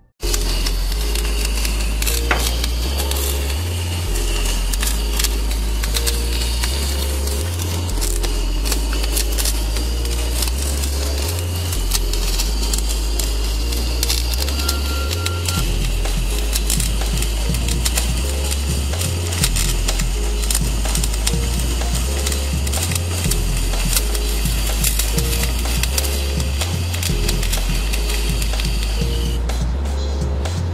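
Background music with a repeating low bass line, over the continuous crackling hiss of electric arc welding on a steel bridge pillar; the crackle stops shortly before the end while the music runs on.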